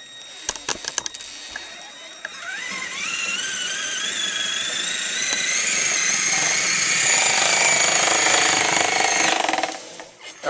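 Traxxas Summit RC truck's electric motor and geared drivetrain whining as it tows a 90-pound load. The whine rises in pitch over about a second, then holds steady and grows louder before cutting off just before the end, with a few clicks near the start.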